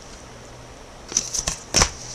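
Baseball trading cards being handled: a few short rustles and flicks of card stock starting about a second in, then a sharper tap near the end.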